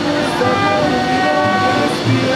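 Live mariachi band playing an instrumental passage: trumpets and violins hold long notes that change pitch a few times, over strummed guitars.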